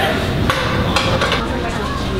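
Metal barn doors and fittings of an ARRI Fresnel film light being handled and adjusted: a few sharp metallic clicks and knocks, about one every half second.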